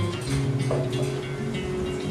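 Acoustic guitar playing chords on its own, notes ringing on with no voice over them.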